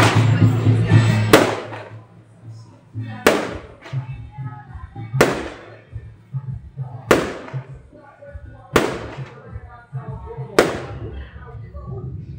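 Six sharp firecracker bangs at a steady pace, about two seconds apart, each with a short ringing tail. Procession music plays under the first second or so, then fades.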